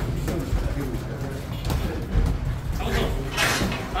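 Boxing gloves landing punches and feet shifting on the ring canvas during a sparring bout, heard as a run of short thuds and knocks, with shouting from ringside.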